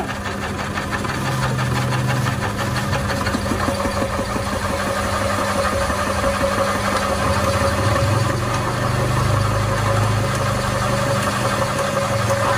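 Electric motor driving a size 12 meat-grinder auger, running with a steady hum while it pushes moistened bran mash through a 2 mm die to extrude feed pellets. The low drone shifts and strengthens for stretches as handfuls of mash are fed into the hopper and the machine takes the load.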